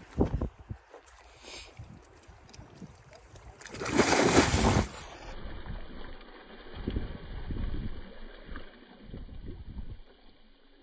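A couple of low thumps at the start, then a person jumping into a lake: a big splash about four seconds in, followed by quieter sloshing and splashing as he swims and thrashes about in the water.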